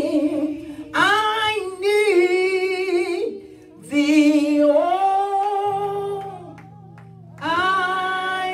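A woman singing solo in slow, drawn-out phrases, holding long notes with vibrato. Each phrase is followed by a short pause for breath.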